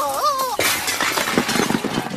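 Cartoon crash effect of tin cans clattering down from a supermarket shelf onto the floor, a dense rush of metallic crashing that starts about half a second in and keeps going.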